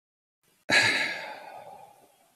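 A man sighing: a single breath out that starts suddenly about two-thirds of a second in and fades away over a second and a half.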